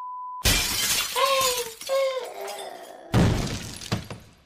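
A steady high test-card tone cuts off half a second in as a loud crash of breaking glass bursts in. Two short wavering cries follow, then a second loud crash just after three seconds.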